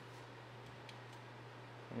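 Quiet room tone: a steady low electrical hum, with a few faint clicks.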